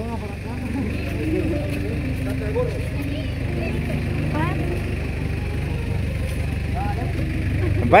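Several people talking quietly in the background over a steady low rumble.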